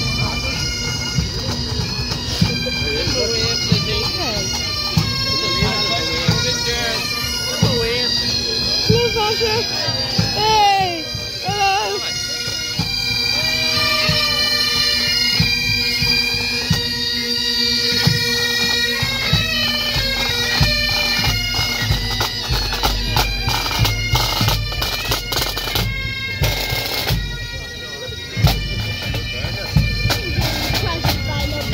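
Pipe band playing as it marches past: bagpipes with a steady drone under the tune, and drums beating time.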